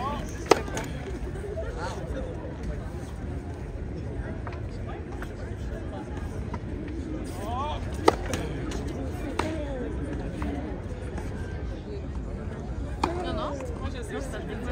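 Tennis serves: two sharp cracks of the racket hitting the ball, about seven and a half seconds apart, with a few fainter ball knocks between them. Voices can be heard in the background.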